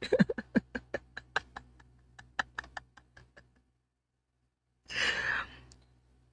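A man's laughter trailing off in a quick run of short breathy pulses that fade away over about three seconds, followed by a long breathy exhale near the end.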